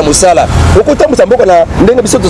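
Speech: a man talking, with a low rumble underneath.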